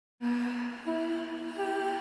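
A soft hummed melody of held notes that steps up in pitch about a second in. A higher note joins near the end and the two form a chord.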